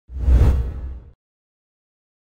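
An edited-in whoosh sound effect with a deep low rumble beneath it, swelling and fading over about a second.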